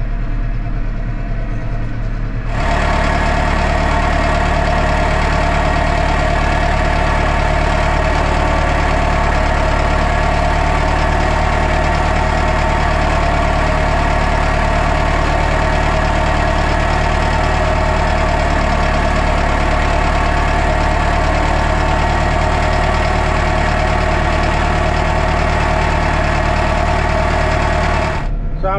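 Valtra N123 tractor's four-cylinder diesel engine running steadily while the tractor drives through deep snow. It is duller for the first couple of seconds inside the cab, then louder and brighter from outside the tractor, holding an even pitch.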